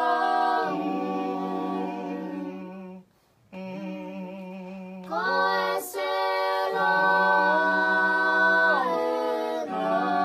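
A small group of voices singing a Tongan hiva 'usu hymn a cappella, in sustained chords. The singing breaks off for half a second about three seconds in, then resumes, with a long held chord near the end.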